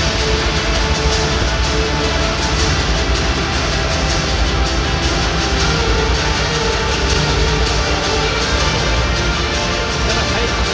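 Loud, steady music played over a football stadium's PA system during the players' video introduction on the big screen, echoing around the stands with crowd noise beneath it.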